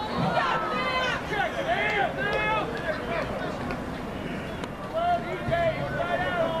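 Several voices shouting and calling across a lacrosse field during play, overlapping one another.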